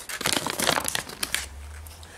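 A folded paper instruction leaflet crinkling as it is unfolded and handled. There is a quick run of crackles in the first second, then it goes quieter.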